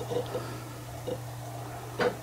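Steady low hum, with a few faint short clicks in the first half-second and once more about a second in.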